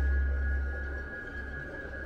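Eerie ambient soundtrack of a haunted-house exhibit: a single steady high tone held over a deep low drone, the drone fading away about a second in.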